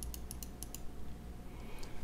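A quick run of about half a dozen light clicks from computer controls in the first second, over a low steady hum.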